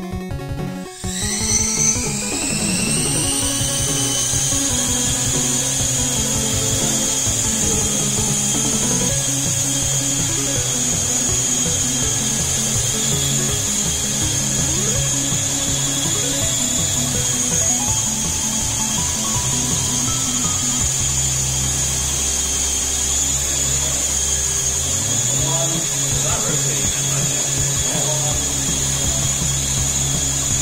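Small electric multirotor micro air vehicle's motors and propellers spinning up about a second in, with a high whine that rises in pitch and then holds steady as it hovers. Electronic background music plays along with it.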